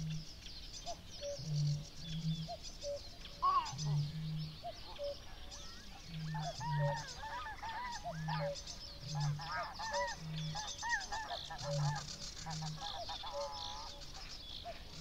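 Fen dawn chorus: a common cuckoo calls its two-note cuckoo over and over, about every two seconds, under constant high songbird song. Geese honk repeatedly for several seconds in the second half.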